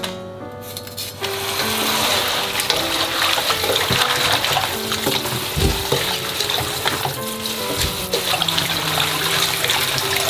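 Kitchen faucet running into a stainless steel bowl of cut napa cabbage while hands stir the leaves to rinse them, starting about a second in.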